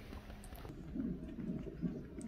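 Cardiotocograph fetal monitor's Doppler speaker playing the unborn baby's heartbeat: a faint, rapid pulsing whoosh, coming in about a third of the way through.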